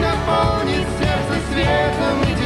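Live pop duet: a man and a woman singing over loud band accompaniment.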